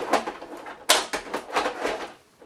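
Plastic casing of an Apple StyleWriter inkjet printer being handled, giving about five irregular clicks and knocks as it is connected back up.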